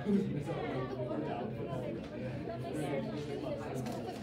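Indistinct chatter: several people talking quietly at once in a large room.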